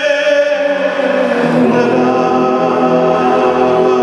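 A man singing live into a microphone over musical accompaniment. He holds a long note with vibrato that ends about a second and a half in, and sustained accompanying chords carry on after it.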